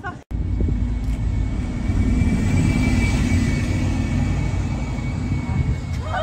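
A loud, steady low rumbling noise that cuts in abruptly after a moment of silence, with a faint steady high whine above it.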